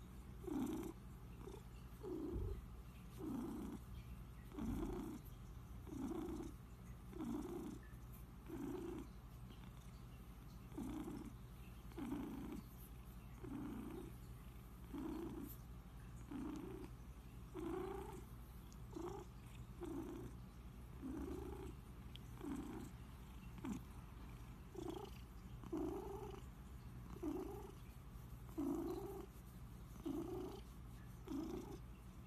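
Domestic cat purring close up while being stroked, the purr swelling and easing with each breath a little faster than once a second.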